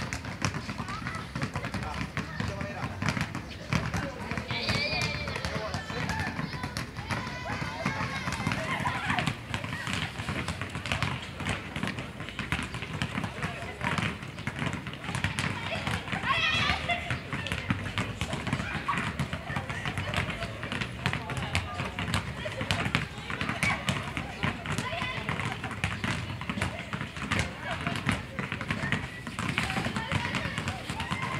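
Many basketballs being dribbled at once on a concrete court: a dense, irregular patter of bounces, with footsteps and students' voices over it, and a few louder calls.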